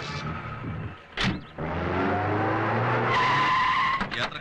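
A car door shuts about a second in. The car's engine then revs up, rising in pitch, and the tyres squeal for the last second as it speeds off.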